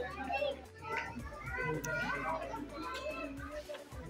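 Indistinct background voices, children's among them, with faint music underneath.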